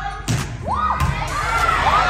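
A volleyball thuds as it is struck, about a third of a second in. Then girls on the court and spectators shout and cheer, with several rising-and-falling shouts, and the noise grows louder toward the end.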